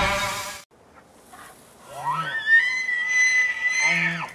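Music fading out in the first half second, then a bull elk bugle: a low growling start gliding up into a high whistle, held for about a second and a half, breaking back down near the end with another low growl.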